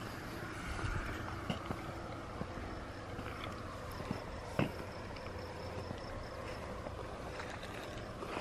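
A car passing at a distance, heard as a steady low rumble, with crickets giving a faint steady high tone over it and a soft knock about four and a half seconds in.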